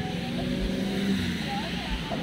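A motor vehicle engine running steadily nearby, with voices talking over it.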